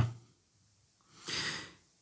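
A man's audible intake of breath, soft and about half a second long, just over a second in.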